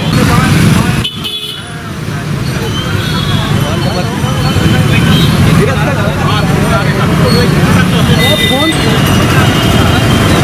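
Busy street traffic, with vehicle horns honking briefly several times over the steady rumble of engines and many people's overlapping chatter.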